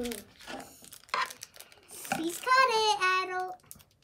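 A young child's high voice making a few drawn-out, sing-song syllables about halfway through, with a few short sounds of handling before it.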